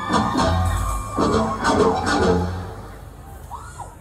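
A live band playing: electric guitar with bass notes, quieter after about two and a half seconds.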